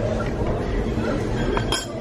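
A single sharp clink of tableware with a brief ring, near the end, over a low murmur of voices at the table.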